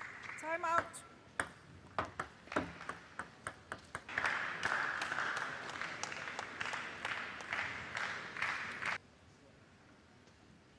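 Table tennis rally ending: a brief shout, then a run of sharp, hollow clicks of the celluloid ball on bat and table, followed by a few seconds of audience applause that cuts off abruptly near the end.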